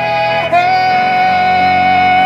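A male singer holds one long, loud sung note over keyboard chords. A short note comes first, then the long note starts about half a second in and stays steady.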